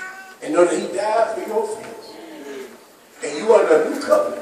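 A man preaching loudly into a handheld microphone in drawn-out, pitch-bending phrases, with a short pause about three seconds in before another loud phrase.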